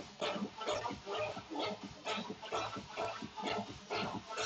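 Dance music from a live DJ set, with a steady beat.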